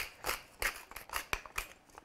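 Wooden pepper mill grinding black peppercorns: a run of irregular, dry clicks as the top is twisted.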